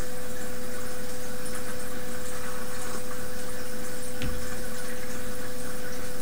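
Steady background hiss with a constant electrical hum tone, and one soft knock about four seconds in.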